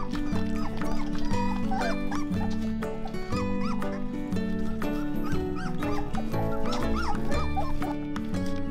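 Background music, with young Weimaraner puppies whimpering and squeaking in short high rising-and-falling calls several times over it.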